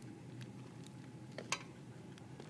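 Mostly quiet, with a few faint clicks and one sharper click about one and a half seconds in, as a king crab leg's shell is split and handled with kitchen shears.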